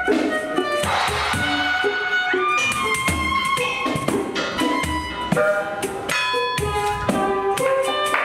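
Two violins playing a bowed melody together over a pandeiro rhythm, its low drum strokes and jingle hits keeping a steady beat.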